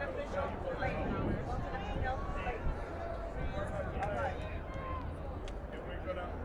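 Indistinct chatter of several voices talking at once, over a low steady rumble.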